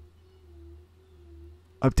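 Faint steady background hum: one soft, level tone over a low drone, with no other event. A man's voice starts again near the end.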